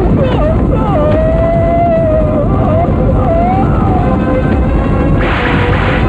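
Film battle-scene soundtrack: a dense, steady low rumble of charging horses and booms, with a long wavering cry held over it for about three seconds near the start.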